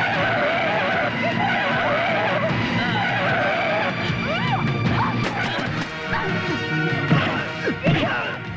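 Dramatic film background score with a wavering melody, joined in the second half by dubbed fight sound effects: a series of sharp impacts, the loudest near the end.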